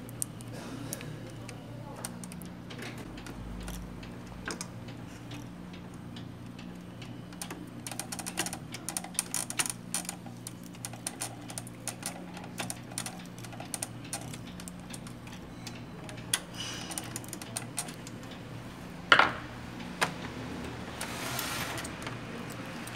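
Small plastic clicks and ticks from hands fitting the ink-supply hoses into the clips of an Epson L120 printer and turning a screw with a screwdriver. The clicks come thickest around the middle, with two sharper snaps near the end, over a steady low hum.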